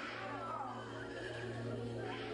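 A high, wavering cry that falls in pitch over about the first second, over a steady low hum and sustained musical tones.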